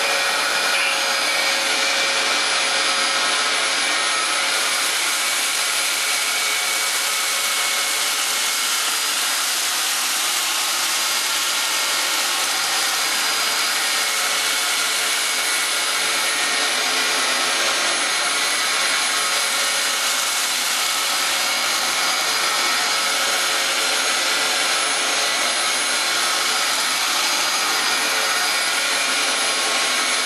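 Dyson DC07 upright vacuum cleaner running steadily with a high whine, vacuuming cat litter off a carpet, with its post-motor HEPA filter removed.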